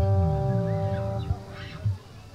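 The band's final chord on electric guitar rings out and fades, with low notes sliding beneath it and two short low thumps near the end. The sound then cuts off sharply.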